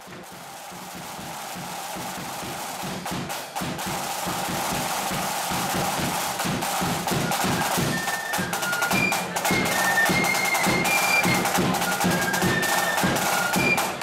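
Flute band's side drums and bass drum opening with a dense roll that builds from quiet to loud over the first few seconds. The flutes come in with a melody of short, high notes about eight seconds in.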